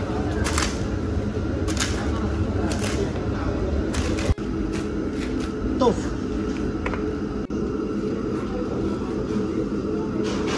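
Large-batch stew cooking in a giant wok: a steady low rumble, with repeated scrapes and clatters as a long metal shovel turns cabbage and glass-noodle sheets. Around six seconds in, a basket of tofu cubes is tipped into the pot.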